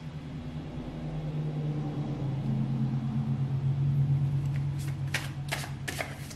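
A low steady hum that swells and then fades, with a few short clicks of tarot cards being handled near the end.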